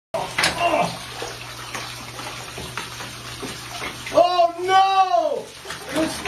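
Water splashing and running, with a person's drawn-out exclamation that rises and falls in pitch for about a second, a little over four seconds in.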